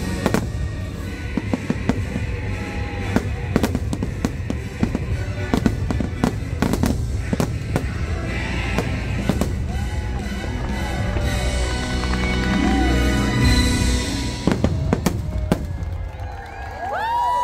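Aerial fireworks shells bursting in a rapid string of sharp bangs over a deep rumble, with the show's music playing underneath.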